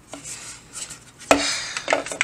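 Hard plastic cover of an essential-oil diffuser being handled: small clicks, then one sharp clack just past the middle, followed by a brief scraping rub.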